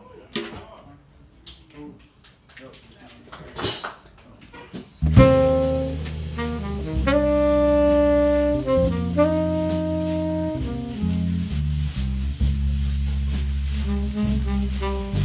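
A few soft clicks and small noises, then about five seconds in a jazz trio starts together and plays on: tenor saxophone with long held notes over electric bass and drums.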